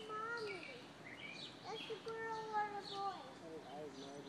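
People's voices with long, drawn-out high-pitched calls, and birds chirping.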